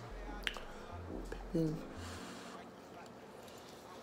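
Quiet room with low handling bumps on a handheld phone. There is a single sharp click about half a second in and a brief murmured voice sound about a second and a half in.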